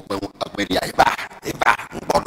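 A man speaking expressively into a microphone: words the recogniser did not write down.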